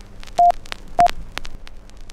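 Short electronic beeps at one pitch, two about half a second apart, over a crackly soundtrack full of scattered clicks and pops with hiss and a faint hum, like worn old film sound.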